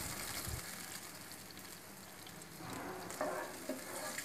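Masala gravy of fried tomato, ginger and chilli paste with water just added, sizzling faintly in a pan while a wooden spatula stirs it.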